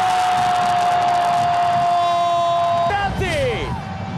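A football commentator's drawn-out goal shout, held on one steady high note for about three seconds before his voice breaks off falling, over stadium crowd noise.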